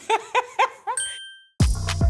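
A quick run of four laughing 'ha' sounds, then a single bright ding that rings out briefly. The electronic music beat comes back in near the end.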